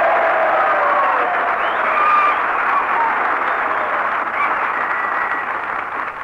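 Large live studio audience applauding, with laughter and a few voices mixed into the clapping, easing off near the end. Heard through an old radio-broadcast recording with a narrow, muffled top end.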